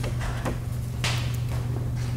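A sheet of paper rustling briefly about a second in, as a paper prototype screen is swapped, over a steady low hum.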